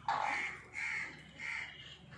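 A bird gives three harsh, cawing calls in quick succession.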